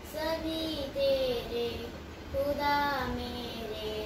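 A young girl singing a prayer solo, in slow, long-held notes.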